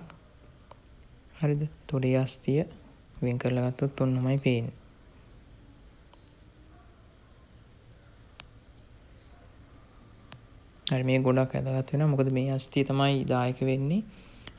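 A man speaking in short phrases, with a pause of several seconds in the middle, over a steady high-pitched background tone.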